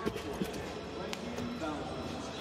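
A gymnast's vault: a thump as the hands strike the vault table at the start, then a sharp knock about a second in as the gymnast lands on the mat, with voices in the arena behind.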